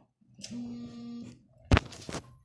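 A boy's voice holding a level 'hmm' for just under a second while he thinks, then a single sharp knock near the end, the loudest sound.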